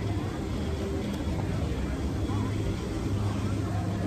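Steady low outdoor rumble with faint voices of people in the background.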